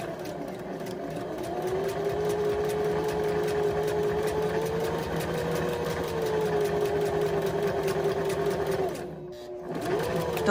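Electric sewing machine stitching a curved seam, run slowly for the curve: a steady motor hum under the rapid, even tick of the needle. The hum rises a little in pitch midway and falls back, and the machine stops about nine seconds in.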